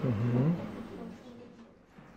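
A man's short wordless "hm", about half a second long, its pitch dipping and then rising, followed by quiet room tone.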